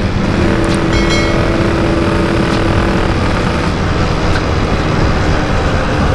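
Yamaha RX-King's two-stroke single-cylinder engine running steadily while under way in traffic, recorded from the rider's seat.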